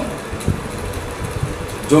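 Steady low background rumble with a faint hum in a pause between a man's spoken phrases, with one soft knock about half a second in.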